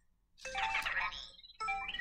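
Anki Vector robot's electronic chirps and beeps in two short runs, the first about half a second in and the second near the end. It is signalling that it heard the "I have a question" command and is ready to listen.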